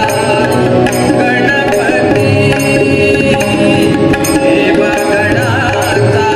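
Devotional bhajan: voices singing over sustained harmonium tones and tabla strokes, amplified through a PA system.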